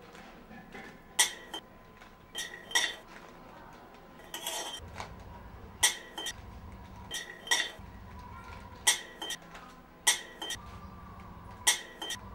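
Spatula striking and scraping a metal kadhai while stirring peanuts, sharp ringing clinks about every second or so, often in quick pairs, with a low rumble underneath in the second half.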